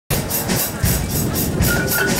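A live marimba and drum band playing, with an even pulse of high-pitched percussion strokes about four times a second and a short, high marimba-like note near the end.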